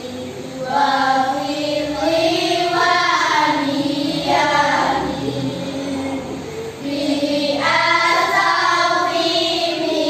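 Voices singing a slow melody in long held notes that glide from pitch to pitch, with a short break about seven seconds in before the next phrase.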